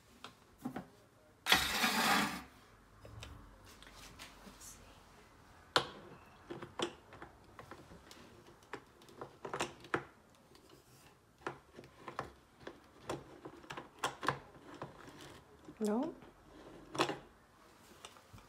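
Scattered clicks and knocks of a metal espresso portafilter and plastic coffee scoop being handled at a Mr. Coffee espresso machine, as ground coffee is loaded and the portafilter is brought up to the brew head. There is a short loud burst of noise about one and a half seconds in.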